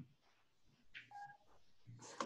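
Near silence, with a faint, short electronic beep of two tones, one higher and one lower, about a second in.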